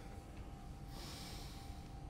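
A man breathing out audibly through his nose, a soft hiss about halfway in, over a faint steady room hum.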